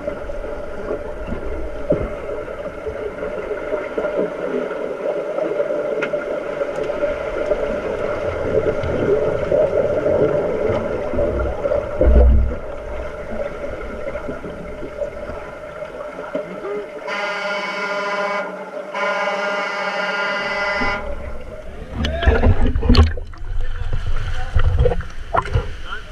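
Underwater sound of a pool during play: bubbles and churning water heard through a submerged camera. About two-thirds of the way through, a referee's underwater signal horn sounds twice, each blast about two seconds long. Near the end the camera breaks the surface with splashing.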